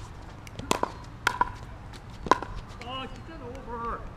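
Tennis ball struck by rackets and bouncing on a hard court: three sharp pops with a short ringing, spaced about half a second to a second apart. Near the end, a player's voice calls out briefly as the point ends.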